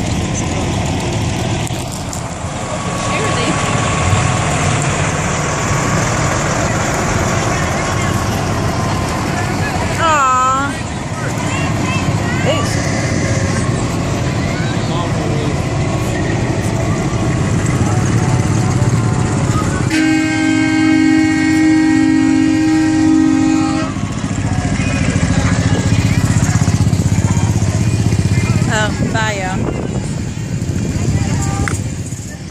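Parade vehicles rolling slowly past with engines running. A vehicle horn sounds one steady blast of about four seconds, a little past two-thirds of the way in.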